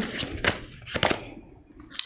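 Tarot deck being handled and shuffled against a tabletop: card rustling with a few light taps, dying away in the second half.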